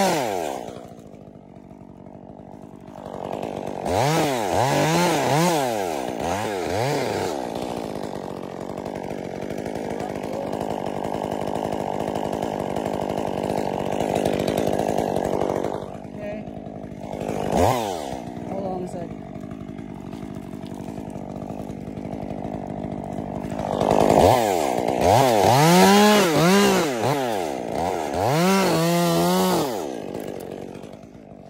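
Small two-stroke chainsaw up in a pine tree, revving up and down in quick repeated bursts, about four seconds in and again over the last six seconds, with one short rev partway through. In between, it keeps running at a steady, lower speed.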